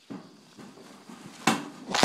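Two sharp knocks about half a second apart near the end, from the wire mesh of a cage trap being bumped while hands work inside it.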